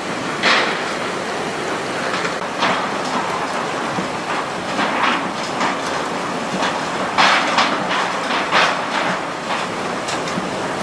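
Hurricane wind and heavy rain: a steady rushing noise, with gusts surging every second or two.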